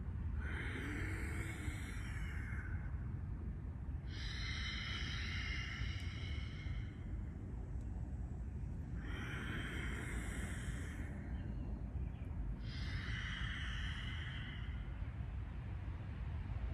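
A man's loud, deliberate breaths, four long hissing breaths of about two seconds each, a few seconds apart, over a steady low rumble.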